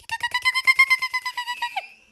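A woman's voice imitating a mother hen calling her chicks: a rapid, high-pitched trilled call of about twelve pulses a second, steady in pitch for about a second and a half, dropping at the end.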